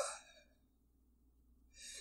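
A woman's breathy sigh trailing off about half a second in, then near silence, then a short faint breath near the end.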